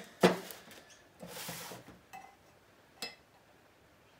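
Stainless steel boat propellers and a metal sliding bevel gauge being handled on a plastic-covered bench. There is a sharp metallic knock about a quarter second in, then a brief rustling scrape, then a couple of lighter clicks.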